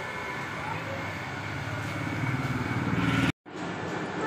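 A motor vehicle engine running as a steady low rumble that grows louder over about three seconds, then cuts off abruptly.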